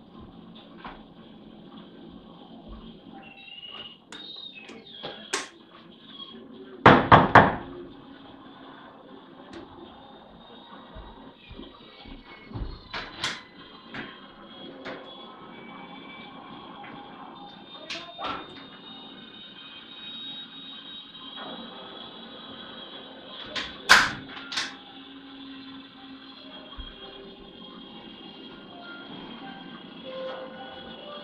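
Knocks and bangs on a front door: three heavy blows in quick succession about seven seconds in, then scattered single knocks, with another loud one near the end. A steady background music drone runs underneath.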